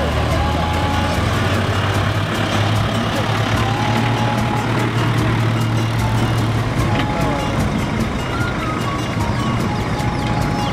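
Vehicle engine running with a steady low hum amid road traffic noise and people's voices; the hum fades out about seven seconds in.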